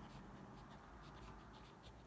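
Pen writing on paper: faint, short scratching strokes as handwritten words are put down.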